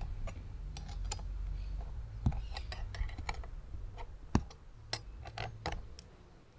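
Small irregular metallic clicks and taps of an Allen key and an open-end wrench working loose the pivot bolt and nut of a car accelerator pedal, with two sharper knocks in the middle.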